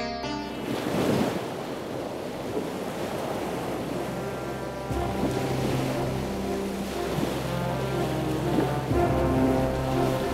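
Ocean waves washing, swelling about a second in and then running on as a steady wash, under background music with long held notes.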